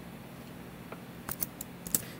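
Computer keyboard keys being typed: a few quick, light key clicks in the second half, as the command "cd" and a space are entered.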